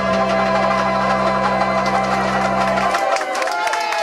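A woman's voice and a band of banjo ukuleles holding the final note and chord of a song, which cut off about three seconds in. Clapping and cheering follow.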